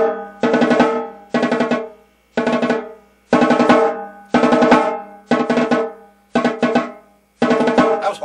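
Snare drum played in short bursts of rapid strokes, about one burst a second, eight in all. Each burst starts loud and fades away, with the drum's ring sustaining under the strokes.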